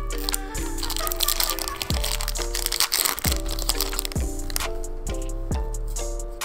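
Foil wrapper of a Yu-Gi-Oh! Rising Rampage booster pack crinkling and tearing open, mostly in the first half, over background music with a steady repeating beat.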